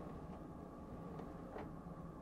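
Low steady room hum with a faint single knock about one and a half seconds in, as a cabinet drawer is pushed shut.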